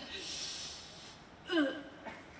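A woman's voice close on a microphone, gasping and breathing without words: a long breathy hiss for about a second, then a short voiced sound about a second and a half in.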